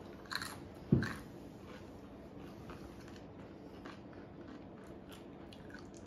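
Crunching and chewing of a spicy tortilla chip, with two sharper crunches in the first second, the second loudest, then softer, scattered chewing crunches.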